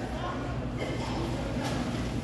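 Café room ambience: a steady low hum with faint voices in the background.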